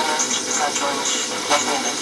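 Unitra ZRK AT9115 stereo receiver playing a weak broadcast station under a steady hiss, with music and speech faintly audible through it.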